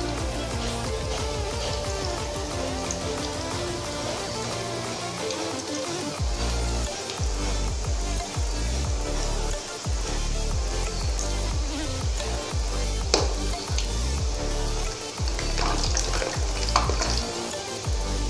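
Balls of bread dough for gulab jamun frying in hot cooking oil in a kadai, a steady sizzle, under background music with a repeating bass.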